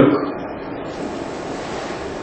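Steady, even background hiss of room tone in a pause between speech, with the end of a spoken word at the very start.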